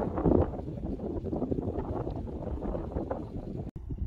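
Wind buffeting the microphone outdoors: an uneven, gusting low rumble with no steady tone, broken by a sudden brief dropout near the end.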